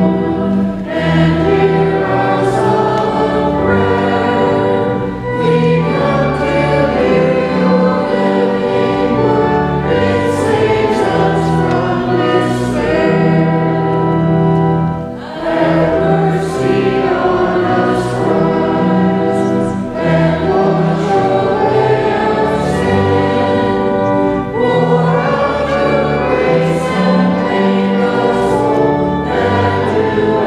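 Many voices singing a hymn together, in long held notes that change about once a second.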